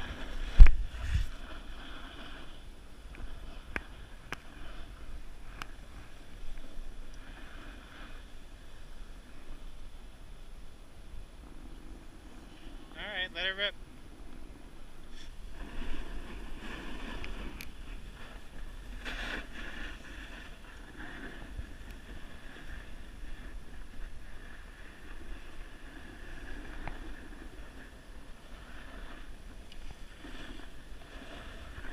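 Skis hissing and scraping over packed snow, with wind rumbling on the camera's microphone as the skier descends. There is a sharp knock right at the start and a brief warbling sound about halfway through.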